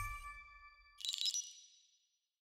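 Logo sound effect: the ringing tail of a sting fading out, then about a second in a bright, high ding that rings briefly and dies away.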